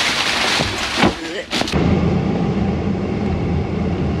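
A plastic trash bag rustling and crinkling as it is grabbed and lifted out of a shower stall, with a few sharp crackles, for about the first two seconds. Then it changes abruptly to a steady low rumble of an idling vehicle engine.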